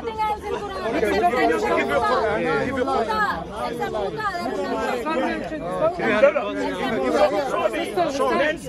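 Several people talking over one another in a heated argument, with overlapping voices and no single speaker clear.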